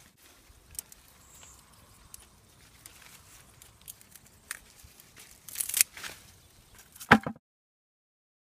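Faint rustling of beet leaves and a few short snips as the beet stalks are cut with garden scissors, with a louder rustle about six seconds in and a sharp knock just after. The sound cuts off abruptly to silence a little after seven seconds.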